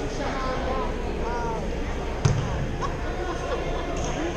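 A basketball bounced once, hard, on a hardwood gym floor about halfway through, over the chatter of voices in the gym.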